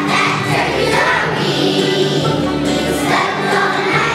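A large choir of young children singing together over an instrumental accompaniment.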